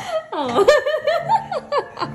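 A woman laughing in several short bursts.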